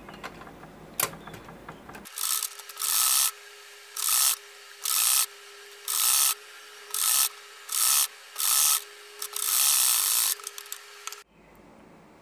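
Usha sewing machine stitching in about nine short runs with brief pauses between them, the last run the longest, after a few small clicks at the start.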